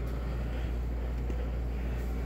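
A steady low hum with a faint even background hiss: room tone, with no distinct events.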